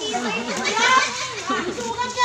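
Several children's and adults' voices talking and calling over one another, with high-pitched children's voices among them.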